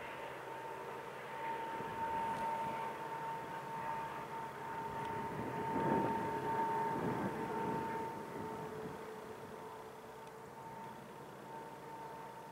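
Long Island Rail Road diesel train pulling away on the track, its rumble swelling about halfway through and then fading, over a steady high whine.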